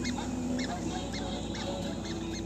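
Old cartoon soundtrack: a rapid string of short, high, squeaky honking cries, several a second, over held lower notes.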